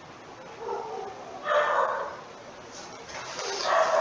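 A household pet's voice: two short calls about a second apart, the second louder.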